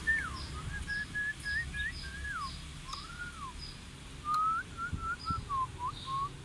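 A run of clear whistled notes, some held level and some sliding up or down, with a few short pauses. Behind them, short high chirps repeat about twice a second for the first half, with one more later.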